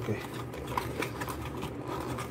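Hands working a small part out of a cardboard box insert: a run of light clicks and rustles of cardboard and plastic.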